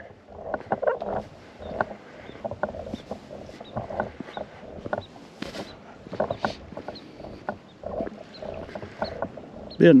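Footsteps crunching on a concrete boat ramp and gravelly sand shore, about two steps a second.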